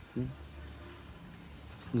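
Insects, such as crickets, chirping in a steady high-pitched drone, with a brief vocal sound just after the start.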